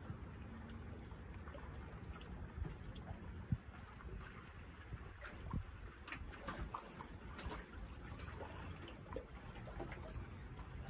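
Faint lake water lapping and trickling against a wooden dock, with scattered small splashes, over a low rumble of wind on the microphone.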